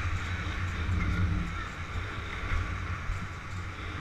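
Motorcycle engine running steadily at low road speed, with wind and road noise on the microphone.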